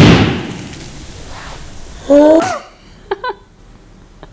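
A zip-lock bag, blown up by the carbon dioxide from a baking soda and vinegar reaction, bursting with a loud pop that dies away over about a second. About two seconds later a child's voice gives a short, loud cry.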